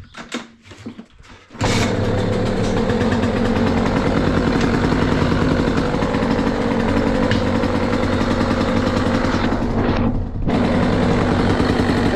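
KTM SX 85 two-stroke single-cylinder dirt bike engine starting about a second and a half in and then running steadily, cold and on the choke. This is its first start after a carburettor cleaning, new spark plug and fresh fuel mix, meant to cure hard starting and stalling at idle. The sound drops briefly about ten seconds in, then picks up again.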